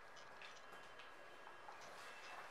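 Faint ticking and scratching of a marker pen writing on a whiteboard, a few small taps as the strokes go down.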